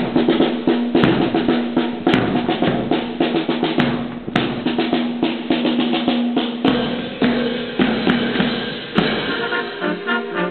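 Marching wind band's drum section, snare and bass drum, playing a street-march cadence with a steady beat, starting suddenly at full volume.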